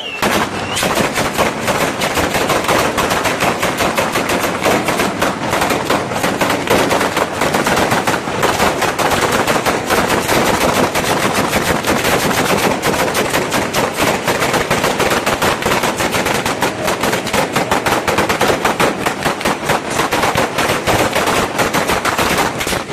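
Batteria alla bolognese: a long chain of firecrackers strung along a rope at ground level, going off in a rapid, unbroken rattle of bangs. It starts suddenly as the chain is lit.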